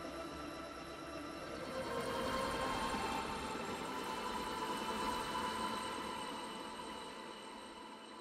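Soft background music, a sustained hazy pad of held tones that swells about two seconds in and then slowly fades out.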